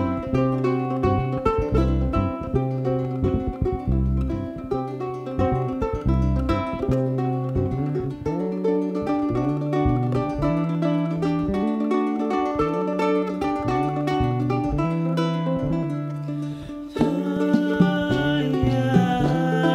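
Live folk band playing an instrumental passage: a small-bodied acoustic string instrument picks the lead over electric bass, electric guitar and hand percussion. After a brief dip, the band comes back in louder about a second before the end.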